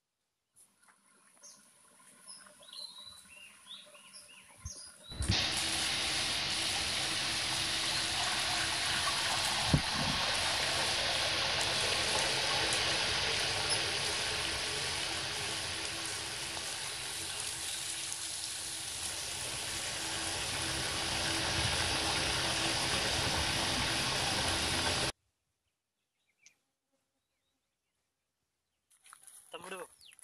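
Faint bird chirps, then water rushing and spraying from a leaking black plastic irrigation pipe. The rushing starts suddenly about five seconds in, holds steady, and cuts off abruptly near the end.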